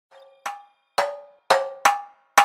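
Trap beat intro melody: a faint first note, then four short struck bell-like notes, each ringing out briefly, stepping between a few pitches at about two a second, with no bass or drums yet.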